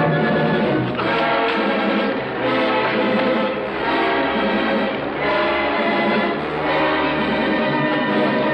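Orchestral film score playing loudly, rising and falling in swells about every second and a half.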